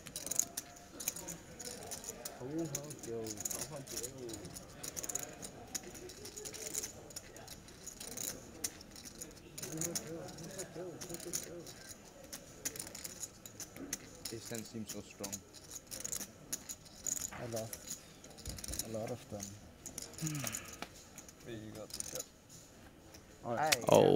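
Poker chips clicking repeatedly as players handle their stacks at the table, with faint chatter in the background.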